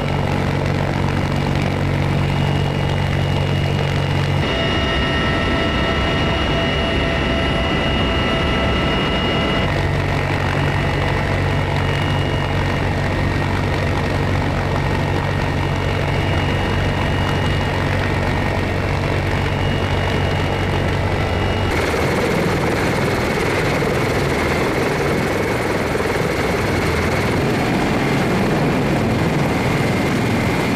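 CH-53E Super Stallion helicopter heard from inside its cabin: a steady low rotor hum under a high turbine whine. The sound changes abruptly at edits about 4 seconds, 10 seconds and 22 seconds in. The last part is a broader, rushing helicopter noise.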